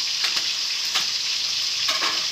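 Homemade pork sausage, put in frozen, frying in hot fat in a small pan: a steady sizzle with a few sharp clicks and pops.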